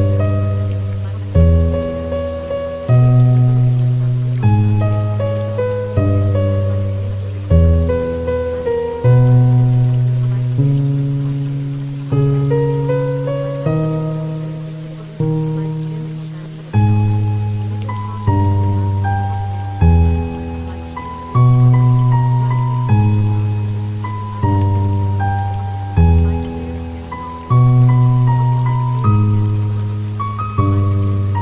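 Slow instrumental music over a steady patter of rain. A new chord is struck about every one and a half seconds and left to fade.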